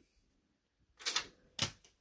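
HP Pavilion desktop's floppy disk drive ejecting a floppy disk with a short mechanical clack, and the disk clattering onto the floor about half a second later.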